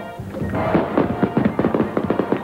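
Background music with held tones under a rapid run of sharp taps, about eight to ten a second.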